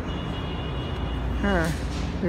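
Steady low rumble and hum of background noise with a faint high steady tone, then a short spoken "haan" near the end.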